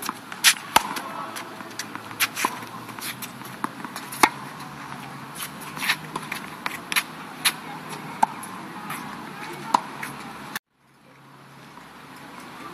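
Tennis rally on an outdoor hard court: irregular sharp pops of a tennis ball struck by rackets and bouncing, with some louder close hits from the near player, over steady traffic hum. Near the end the sound cuts off abruptly.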